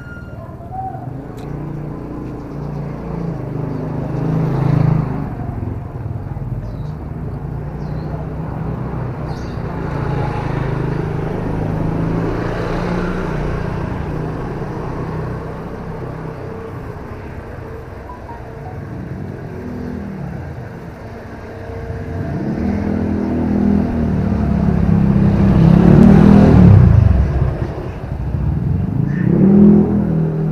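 Small motorcycle engines running along a narrow alley, swelling and fading as the bikes come and go, with the loudest pass near the end.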